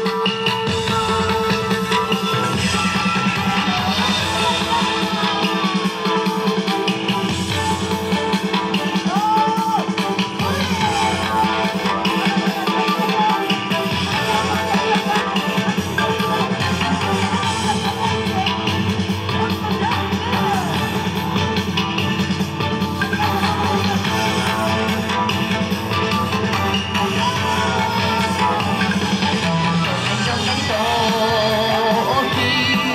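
Loud yosakoi dance music with a steady beat, playing throughout.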